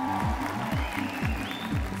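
Audience applauding over background music with a steady bass beat.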